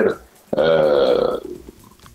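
A man's drawn-out hesitation vowel, a filler 'eee' of just under a second, held on one slowly falling pitch in a pause mid-sentence.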